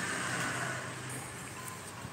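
Steady background noise with a low hum that fades out about a second in, with no distinct event.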